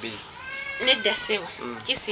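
A woman speaking, with a drawn-out, slightly falling high-pitched animal call behind her voice in the first half.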